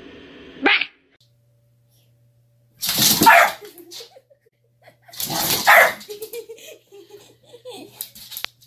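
Dog barking: two loud, harsh barks about two seconds apart, followed by softer, lower wavering sounds.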